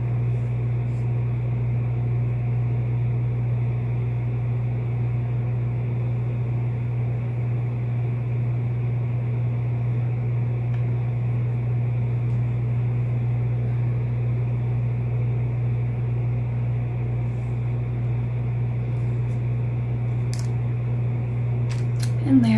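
A steady low hum, like a running fan or electrical hum, holding an even level throughout, with a few faint clicks near the end.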